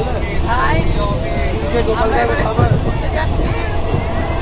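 People talking over the steady low rumble of a moving passenger train carriage.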